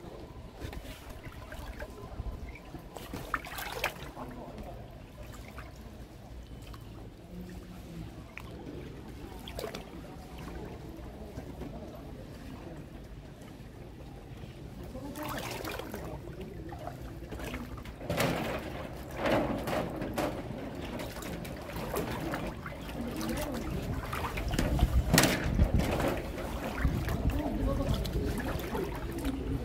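Floodwater sloshing and swirling around someone wading through it, in irregular surges that grow louder in the second half.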